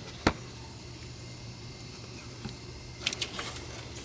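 Hand work on engine parts: one sharp click about a quarter second in, then a few light clicks and rustling around three seconds in, over a faint steady hum.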